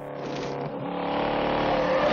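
A car engine running with a steady pitched drone, growing steadily louder.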